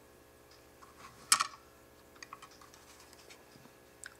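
Small handling noises from a Helios rebuildable dripping atomizer and its coil wire as the coil leads are worked into the posts: one brief louder rustle about a second and a half in, then a run of light clicks and ticks.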